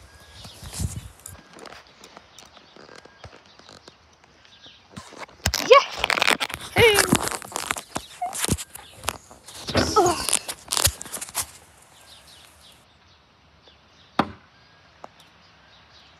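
Footsteps on dry grass, then voices calling out loudly for several seconds in the middle. Near the end comes a single sharp thunk of a throwing knife striking the target board.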